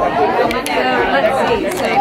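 Indistinct chatter of several people talking at once, with a few short clicks.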